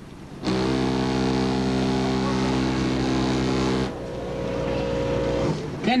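A competition car audio system playing a steady, low bass tone for an SPL (dB drag) measurement. It starts abruptly, holds loud for about three seconds, drops to a lower level and cuts off shortly before the end.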